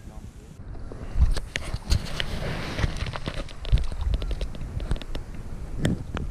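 Wind rumbling on the microphone, with scattered short knocks and clicks throughout.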